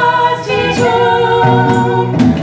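A small group of singers singing together into microphones, several voices at once in harmony.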